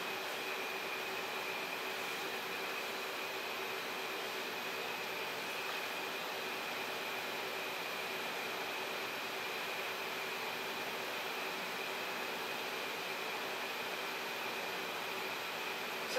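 A wall-mounted air conditioner running: a steady whir and hiss with a faint, constant high whine.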